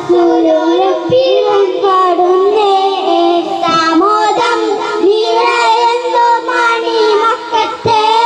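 Three boys singing a song together into handheld microphones, their voices amplified. The melody runs on without a break, with held notes that bend up and down.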